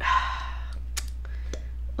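A breathy sigh-like exhale at the start, then a few light, sharp clicks of plastic lip gloss tubes being picked up and handled.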